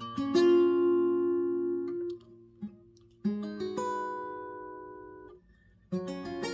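Acoustic guitar with a capo at the sixth fret, fingerpicked as a slow arpeggio: two chords from the Fmaj7–Em–Dm7–Cmaj7 progression, the first struck at the start, the second about three seconds in, each left to ring and fade out.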